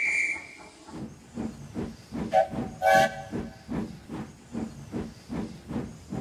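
Steam locomotive sound effects: a high whistle blast that ends about a second in, then steady rhythmic chuffing as the engine pulls away. A lower whistle toots twice briefly in the middle.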